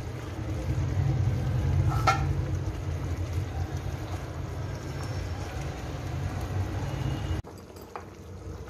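Thick curry gravy boiling in a kadhai over a gas burner and stirred with a ladle, making a steady low rumble. About two seconds in, the ladle knocks once against the pan with a short ring. The sound cuts off abruptly near the end.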